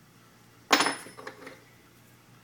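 A sharp metallic clank about two-thirds of a second in, ringing briefly, followed by a few lighter knocks of metal being handled.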